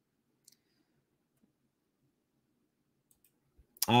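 Faint computer-mouse clicks over near silence: one about half a second in, and a quick pair just after three seconds.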